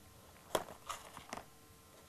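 Soft pastel stick dabbed against the paper: three faint taps within about a second.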